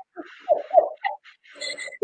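A woman laughing quietly in a run of short, croaky bursts, trailing off in the second half.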